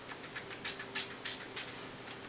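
Pump-spray bottle of e.l.f. Mist & Set makeup setting spray being pumped over and over: a quick run of short hissing puffs of mist, about three a second.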